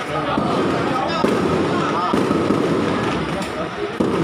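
A string of firecrackers going off in a continuous dense crackle of rapid pops, mixed with voices in the crowd.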